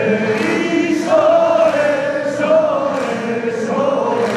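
Yosakoi dance music carried by a group of voices singing together in sustained phrases.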